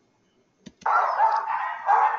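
A dog's call from the soundtrack of a video ad, starting suddenly just under a second in after a single click and continuing loudly.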